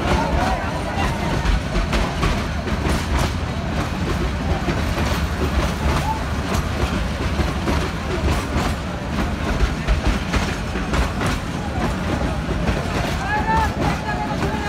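Bangladesh Railway passenger train rolling past, its wheels clacking over the rail joints over a steady low rumble. Passengers' voices call out near the start and again near the end.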